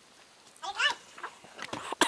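A short, high, wavering cry, meow-like, about half a second in, followed by fainter brief sounds near the end.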